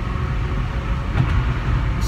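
Steady low rumble of a moving car, engine and road noise heard from inside the cabin.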